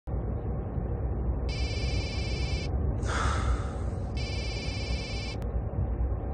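Mobile phone ringtone ringing twice, each ring a buzzy electronic tone about a second long, with a brief swish between the rings. A steady low rumble of a car interior runs underneath.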